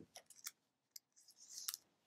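Near silence broken by a few faint clicks and a brief soft rustle about three-quarters of the way through, small handling noises.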